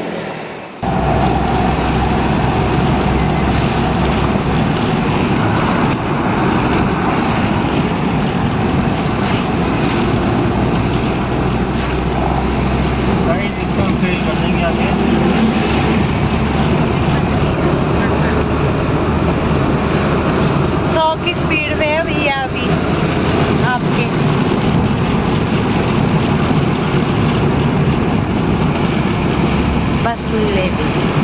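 Steady road, tyre and engine noise heard from inside a Suzuki car driving at speed on a highway, with some wind. About 21 seconds in, a brief wavering higher tone sounds over it for a second or two.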